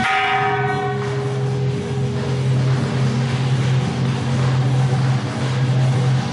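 A bell struck once at the start, ringing out with many overtones that fade within about a second, one lower tone lingering a little longer, over steady background music.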